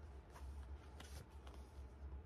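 Pages of a large softcover book being opened and leafed through by hand, with about three soft paper rustles.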